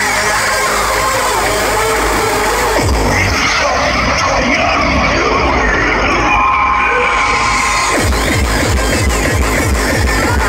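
Hardcore/terror electronic music played loud over a festival sound system. About three seconds in the kick drum drops out for a filtered breakdown with a held synth tone. Around eight seconds in, fast kicks at roughly three to four a second come back in.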